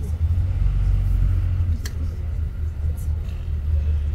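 Shuttle bus engine running low and steady, heard from inside the passenger cabin while the bus drives slowly, with a single sharp click about two seconds in.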